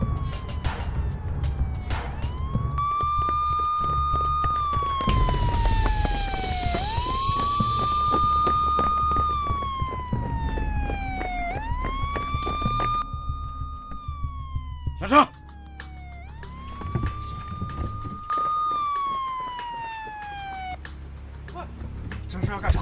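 Police siren wailing in slow cycles, each rising quickly, holding, then sliding down, repeating about every four to five seconds over a low rumble. A sharp, loud crack about fifteen seconds in.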